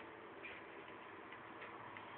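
Faint, irregular light clicks heard from a television's soundtrack over a low background hiss.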